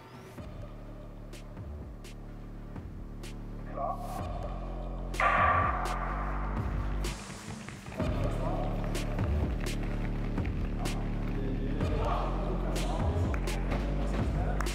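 Background music with a steady beat. About five seconds in, a sudden loud sound rings on for a couple of seconds over it.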